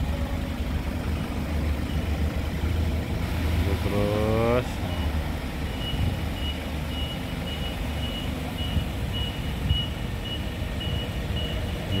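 Nissan forklift engine running steadily while reversing, with a short rising whine about four seconds in. From about halfway, the reversing alarm beeps in a high tone about twice a second.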